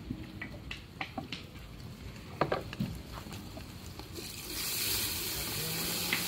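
Wood fire crackling under a cooking pot, with scattered sharp pops. About four seconds in, a steady high hiss sets in and carries on.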